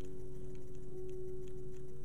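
Background countdown music: soft, sustained chord tones held steady over a faint, regular clock-like ticking.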